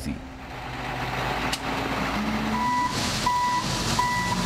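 Wheel loader's diesel engine running, with its reversing alarm starting about two and a half seconds in: a single tone beeping about once every two-thirds of a second.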